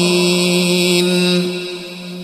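Background vocal chant holding one steady low note, fading out over the second half.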